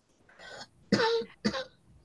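A person clearing their throat with a short cough, in three quick bursts, the second the loudest.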